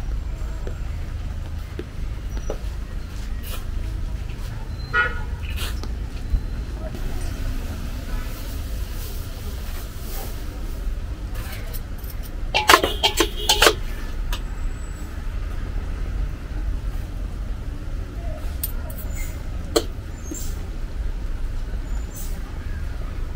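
Street ambience with a steady low rumble, in which a vehicle horn toots several times in quick succession about halfway through.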